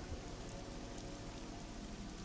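A faint, steady hiss with faint held tones beneath it: low background ambience in a gap between voices.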